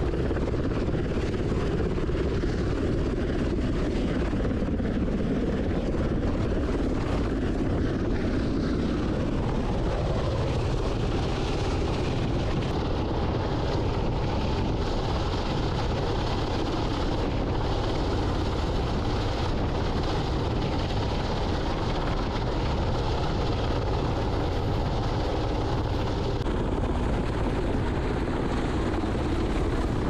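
UH-60 Black Hawk helicopter flying in low and hovering overhead, its rotor and turbine noise steady and loud. The tone shifts about nine seconds in.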